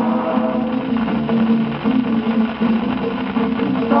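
Old 78 rpm shellac record of a samba-canção playing, a regional ensemble of plucked strings carrying an instrumental passage between sung lines.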